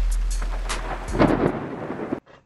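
Thunder rumbling with rain, over a deep bass tone that fades away; the rumble swells about a second in and then dies down.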